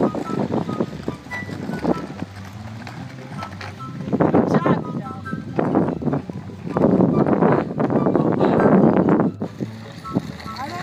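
Small plastic kick-scooter wheels rolling and rattling over an asphalt path, louder in two stretches in the second half.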